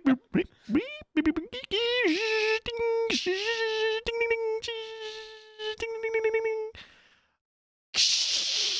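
A person imitating a computing machine with their voice: clicks and mouth pops, then a long held beep-like tone at one steady pitch, broken now and then by clicks, that cuts off near the end.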